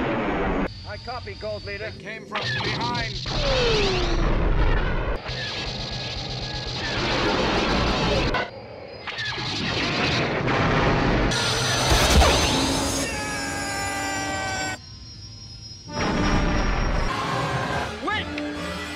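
Film space-battle sound effects cut together in short, abruptly changing segments: X-wing starfighter explosions, engine fly-bys and blaster fire over an orchestral score. A falling fly-by sweep comes about four seconds in.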